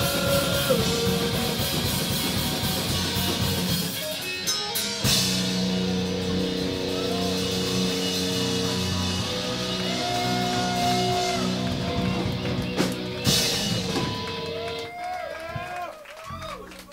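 Live punk-rock band with electric guitars, bass guitar and drum kit playing loudly. The playing breaks off briefly about four seconds in, then comes back as long held chords with a cymbal crash, and the song ends shortly before the end.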